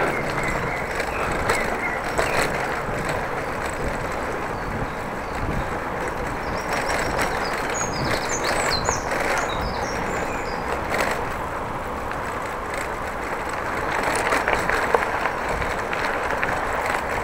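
Steady rolling noise of a bicycle ridden along an unpaved dirt path: tyres on the surface and wind over the camera microphone, with small knocks from bumps. A bird chirps a few times near the middle.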